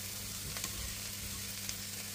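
Chopped vegetables sizzling gently in oil in a nonstick frying pan, a steady soft hiss over a low hum, with a few faint light taps as diced red bell pepper pieces drop into the pan.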